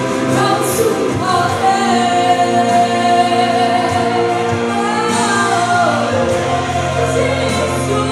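A woman singing live into a microphone over instrumental accompaniment, holding long notes that bend from one pitch to the next.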